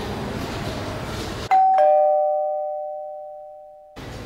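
Two-note ding-dong doorbell chime: a higher note about a second and a half in, then a lower note just after, both ringing on and fading slowly. Before it there is a steady hiss.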